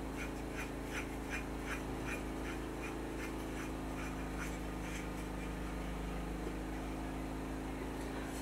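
A wooden spacer block cut from a 2x4 being twisted by hand onto a bolt through the bottom of a frying pan: a faint, regular scraping, about two or three strokes a second, that dies away about halfway through. A steady low hum runs underneath.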